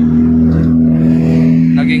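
A vehicle engine idling close by: a steady, low hum that holds one pitch and grows a little louder.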